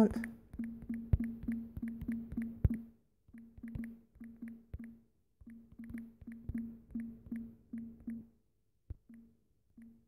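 Smartphone on-screen keyboard key-press sounds as a message is typed: short, identical low pops, about four a second, in three runs with brief pauses, then a few single taps near the end.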